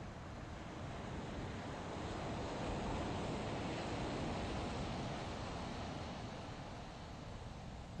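Ocean waves washing in: a steady hiss that swells slowly to a peak near the middle and then eases off.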